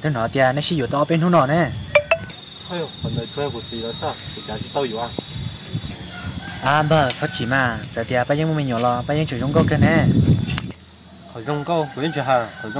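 A steady, high-pitched insect drone runs under a conversation between men, then cuts off suddenly about eleven seconds in.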